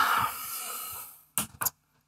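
A long breathy exhale fading out over about a second, then two short clicks of a Glencairn whisky glass being taken from a shelf of glassware.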